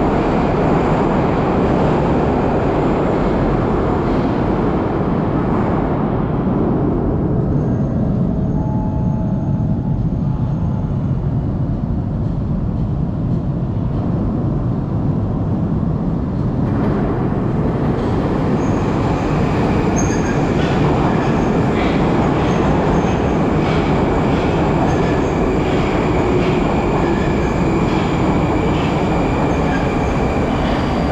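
Moscow Metro train rumbling in the underground station. The low rumble runs throughout. From about 17 s a train draws in along the platform, adding a steady high whine and a run of clicks from its wheels.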